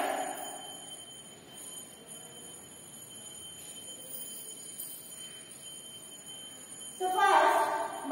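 A woman's voice briefly at the start. Then quiet room tone with a faint steady high whine, until she speaks loudly again from about seven seconds in.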